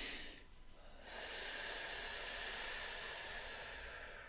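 A woman's soft, slow breathing: a short breath right at the start, then one long breath lasting about three seconds that fades near the end, a deep breath taken to calm herself.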